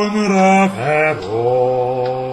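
A man singing a wordless, chant-like vowel. He holds one note, slides down through a short phrase about a second in, then holds a lower note.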